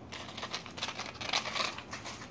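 Soft, irregular rustling and crinkling of paper and plastic-and-card packaging being handled, with a few small clicks.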